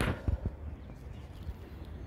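Handling noise from a phone camera being turned round to face forward on a moving bicycle: a few sharp knocks near the start, then a low steady rumble of wind on the microphone.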